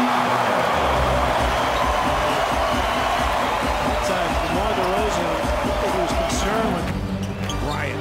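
Basketball arena crowd noise from a game broadcast, a steady din with voices and music in it, and a few sharp basketball bounces on the hardwood court near the end.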